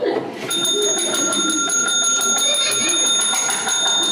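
A reception desk service bell struck rapidly over and over, starting about half a second in, so that its ringing runs on continuously to summon the receptionist.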